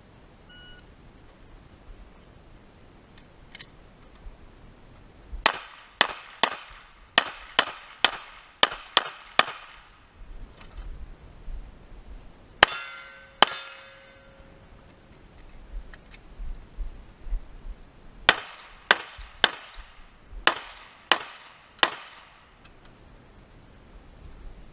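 An electronic shot timer beeps once. A pistol then fires a fast string of about ten shots, two more shots a few seconds later with a ringing tail, and a second string of about eight shots. The drill is shot strong hand, then weak hand.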